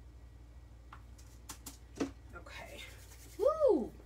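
A few light clicks and taps from handling a hot glue gun on the craft table, over a steady low hum. Near the end comes a woman's short, high-pitched yelp that rises and falls in pitch, a reaction to hot glue on her fingers.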